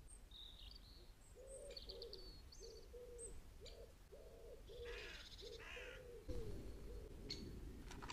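Common wood pigeon cooing: a run of about ten short, low coo notes, with the high chirps of small birds over it and two harsh calls from another bird about five and six seconds in.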